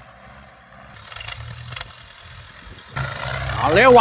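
Farm tractor engines running steadily under load as the tractors pull disc harrows, heard as a low hum. A louder rush of noise comes in abruptly about three seconds in, just before a shout.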